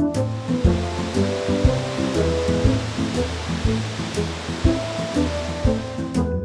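Steady rush of a waterfall under background instrumental music. The water noise starts and stops abruptly with the shots.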